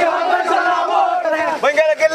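A group of men chanting a political slogan together, loud and in short rhythmic calls, with sharper separate syllables in the second half.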